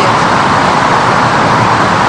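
Steady, fairly loud outdoor background rush: an even noise with no distinct events, in the pause between words.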